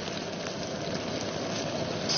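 Dark soy-and-mushroom broth boiling steadily in a stainless-steel wok, a continuous bubbling hiss.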